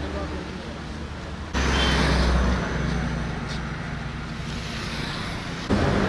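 Street ambience: a low vehicle rumble and indistinct voices. The level jumps suddenly about a second and a half in and again near the end.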